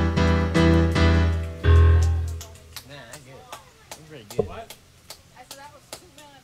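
Digital stage piano playing a few loud closing chords over a deep bass note, the last and loudest about two seconds in, then cut off about half a second later: the end of a tune.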